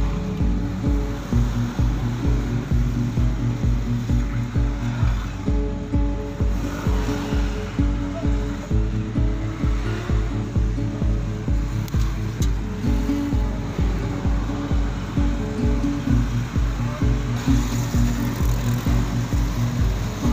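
Background music with a steady beat, about two kick-drum beats a second, over sustained chords.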